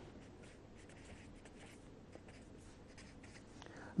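Faint scratching of a felt-tip marker writing on paper, in many short strokes.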